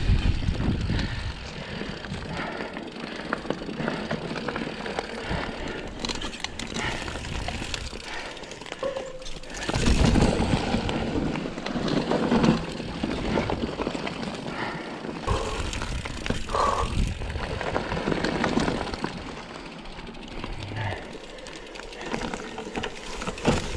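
Mountain bike riding a dirt trail: tyres rolling and skidding over dirt and roots, the bike rattling and knocking over bumps, with wind rushing on the microphone. It gets rougher and louder for a stretch about halfway through.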